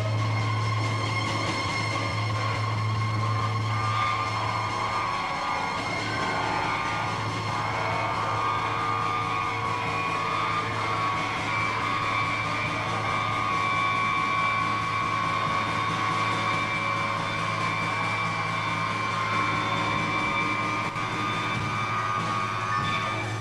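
A live band playing a droning ambient passage: a steady low drone with sustained higher tones held over it and no beat.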